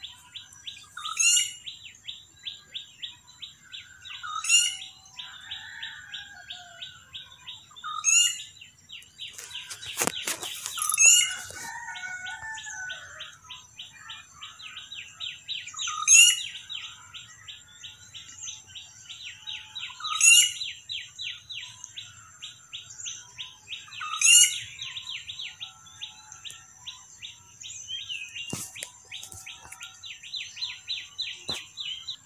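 Birds chirping: a rapid, steady train of small chirps, with a louder sweeping call that repeats about every four seconds. A brief sharp knock comes about ten seconds in.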